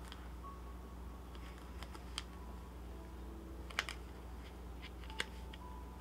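A few faint clicks and taps of tarot cards being handled and laid down on a cloth-covered table, over a low steady hum.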